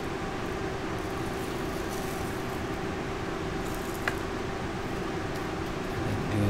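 Steady background hum and hiss with a constant low tone, with one faint tick about four seconds in.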